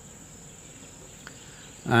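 Crickets in a steady high trill under faint outdoor background noise; a man's voice starts speaking near the end.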